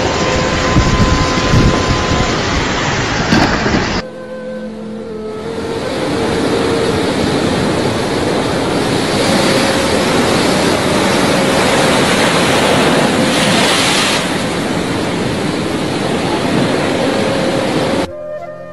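Rushing floodwater with wind buffeting a phone microphone, a steady loud noise. About four seconds in it cuts abruptly to another recording of flowing floodwater, which comes in quieter and builds back up.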